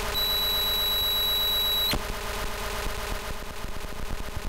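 Electronic noise from a homemade analogue noise synthesizer. A steady piercing high tone sounds for just under two seconds and cuts off with a click about two seconds in. It is followed by a stuttering run of fast clicks and pulses over a low buzz.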